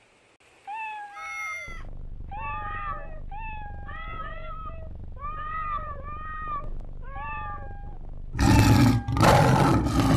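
Cats meowing: a run of about a dozen short meows of varying pitch, some overlapping, over a low rumble. Near the end come two loud, harsh bursts of noise.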